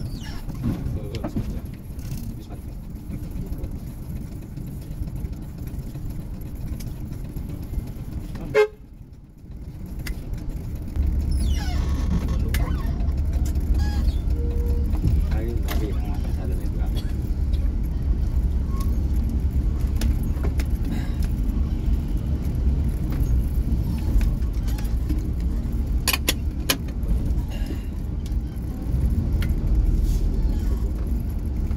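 Bus engine and road noise as the bus rolls slowly. About nine seconds in there is a sharp knock and a brief drop, and then a steady low engine drone takes over.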